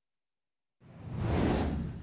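Silence for almost a second, then a whoosh sound effect that swells and eases slightly near the end.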